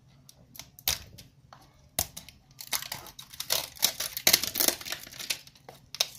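Clear cellophane shrink wrap being torn and peeled off a small cardboard box. A few sharp clicks come in the first two seconds, followed by a few seconds of dense crinkling and tearing.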